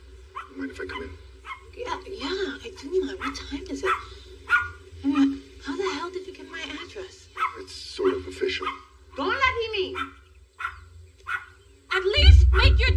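Small dog yipping and whining in a quick run of short, pitch-bending calls, over a steady low hum.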